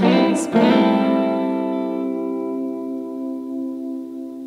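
Electric guitar playing a final chord, after a last sung note that ends about half a second in. The chord sustains and slowly fades away.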